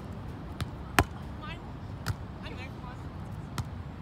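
Basketball bouncing on a court floor: four irregular hits, the loudest about a second in, with short high squeaks in between over steady gym background noise.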